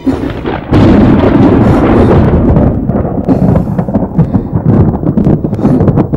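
Loud thunder, a film sound effect, setting in at the start and cracking to full strength about a second in, then rolling on with crackling peaks.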